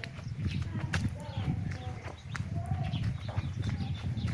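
Chickens clucking in a poultry shed: two short arched calls, one about a second in and one near three seconds, with scattered clicks and a steady low rumble underneath.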